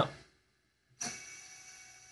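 Four brushless drone motors, props removed, spinning up together at low throttle in a bench motor test. A steady whine of several tones starts suddenly about a second in and then slowly eases in level.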